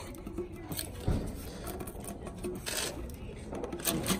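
Lid of a metal cookie tin being gripped and pried at by hand: light metallic clicks and scrapes, a dull knock about a second in and a short rasp of metal near three seconds in.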